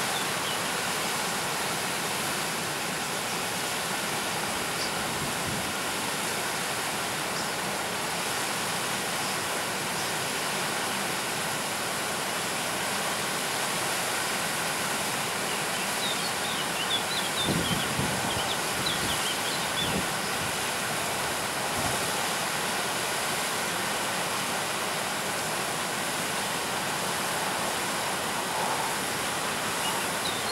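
Stream water rushing and tumbling over rocks in a small cascade, a steady even hiss. A little past halfway, faint high chirps of small birds and a few low bumps rise briefly above it.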